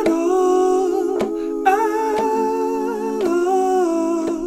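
A man singing long held notes with vibrato over ukulele chords struck about once a second.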